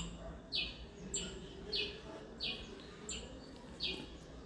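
A bird repeating a short, high chirp that falls in pitch, about every two-thirds of a second, six or seven times.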